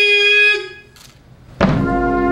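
Ceremonial music: a long held note ends about half a second in, and after a short pause, brass with a drum comes in on a loud sustained chord near the end.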